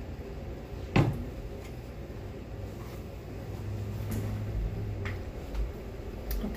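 A single sharp knock about a second in, like a cabinet door shutting, over the steady rush of a room fan running for white noise. Small faint handling sounds follow later.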